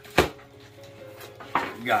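A knife blade slitting the packing tape on a cardboard box, with one sharp, loud crack about a quarter of a second in, then quieter handling of the box.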